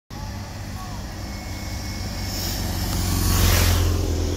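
A motorcycle approaching and passing close by, its engine and road noise building to a peak about three and a half seconds in, over a steady low hum.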